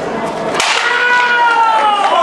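Crack of a stack of wooden boards breaking under a martial-arts strike about half a second in, followed by a long held shout that slowly falls in pitch.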